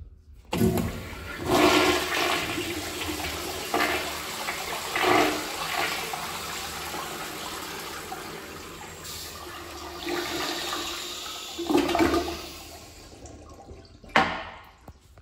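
A 1966 Eljer Auburn toilet flushing: water rushes in suddenly and swirls down the bowl, surging louder a few times, then dies away as the bowl refills near the end.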